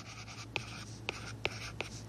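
Stylus writing on a tablet: faint scratching strokes broken by several sharp little ticks as the pen tip taps and lifts while forming letters.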